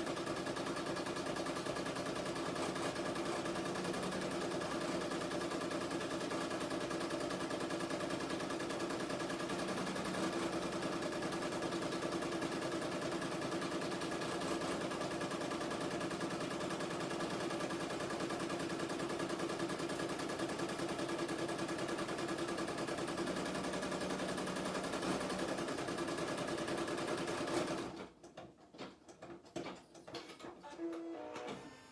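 Home embroidery machine stitching a design at speed, a fast, steady needle rattle. It stops suddenly about 28 seconds in, followed by a few faint clicks.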